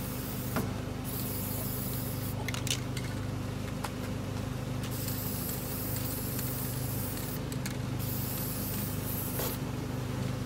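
Aerosol spray-paint can spraying in long hissing bursts, several in a row with brief breaks between them, as lines are painted on a wall. A steady low hum runs underneath.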